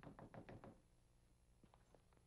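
A quick run of about six knocks within the first second, followed by a few faint ticks near the end.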